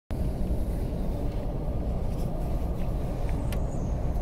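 Steady low rumble of a coach's engine and running gear heard from inside the passenger cabin, with a faint click about three and a half seconds in.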